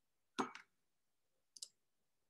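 Two short clicks in a quiet room: a sharper one about half a second in and a faint double click near the end.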